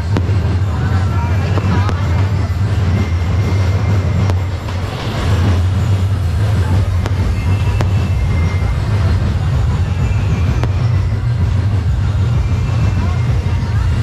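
Aerial fireworks going off overhead, with a few sharp cracks and pops, over a steady loud low hum and the voices of a large outdoor crowd.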